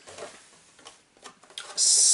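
Light plastic clicks and rustles as an RC buggy's body shell is handled, then a click and a loud, steady hiss lasting about a second near the end.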